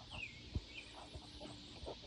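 A bird chirping faintly: a high falling chirp at the start and a shorter one just under a second in, with a light knock between them.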